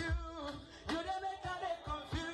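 Music with singing over a deep, regular bass beat.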